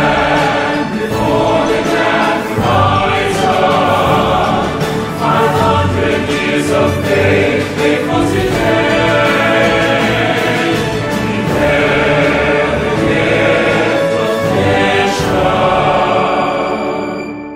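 Choral song with instrumental backing: a choir singing "We stand before the grand horizon, 500 years of faith grateful today," moving into "We bear the gift of mission" near the end.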